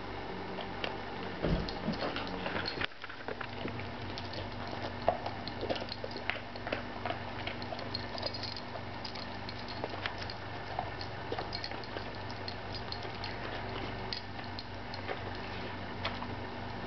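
An Airedale terrier chewing a crunchy dog biscuit: a long run of small crackling clicks, busiest in the first few seconds, over a faint steady hum.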